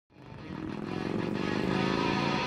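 A motorcycle engine running steadily at cruising speed, fading in from silence over the first half second.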